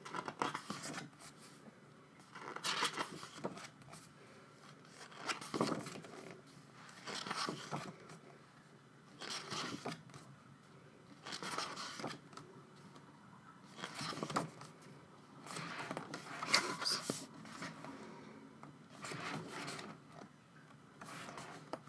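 Pages of a printed album photobook being turned by hand, one page about every two seconds, each turn a short papery rustle and flap.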